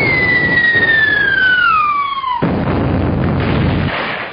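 Bomb-drop sound effect: a whistle glides steadily down in pitch for about two and a half seconds, then breaks off suddenly into an explosion that rumbles on and fades.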